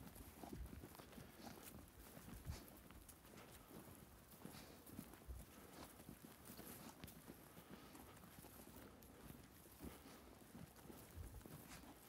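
Faint footsteps on dry, loose tilled soil: soft, uneven thumps at a slow walking pace, with light scuffs in between.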